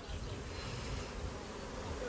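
Steady buzzing of a colony of Carniolan honey bees on the uncovered frames of an opened hive super.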